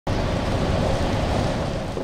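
Steady rushing noise of a convoy of SUVs driving in over gravel, mixed with wind on the microphone, easing slightly near the end.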